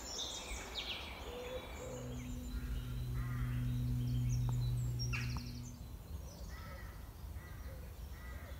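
Woodland birds singing and calling in short repeated chirps, with a steady low hum that sets in about two seconds in and stops just after five seconds.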